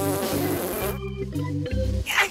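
A buzzy, rasping cartoon sound effect that cuts off abruptly about a second in, over a low, stepping bass line of background music.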